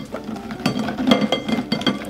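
Plastic glue bottles clattering and clinking against each other and the glass bowl they sit in as hands rummage through them, a quick irregular run of small knocks.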